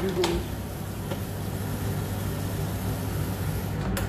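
Steady low hum of a commercial kitchen extractor fan, with a couple of light knocks in the first second and a sharper knock near the end.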